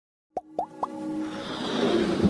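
Animated logo intro sound effects: three quick rising plops, each a little higher than the one before, then a swelling whoosh with sustained tones that builds up.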